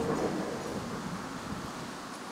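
Steady outdoor background noise from the open air, slowly fading.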